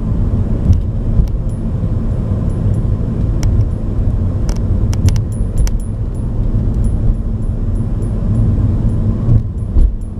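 Road and engine noise heard inside a moving car's cabin: a steady low rumble, with scattered light clicks and rattles, most of them in the middle of the stretch and one more near the end.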